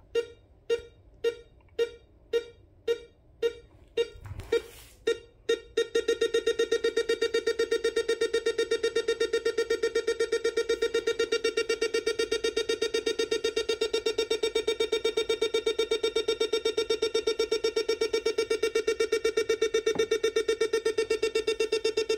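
A two-op-amp pulse tone generator on an electronic project kit beeps through its small speaker with a buzzy tone. At first it pulses about twice a second. After a low knock about four seconds in, it speeds up to a rapid, even pulsing of several beeps a second.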